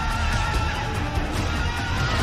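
Movie soundtrack: dramatic score over a dense storm of wind and rain, with a crowd of men shouting.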